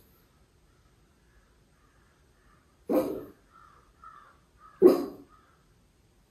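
A miniature schnauzer barking twice, about three seconds in and again near five seconds, the second bark the louder, with softer, higher sounds between the barks.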